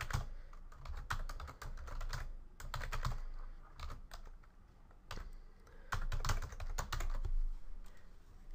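Typing on a computer keyboard: quick runs of key clicks in short bursts, with a pause of about a second just past the middle.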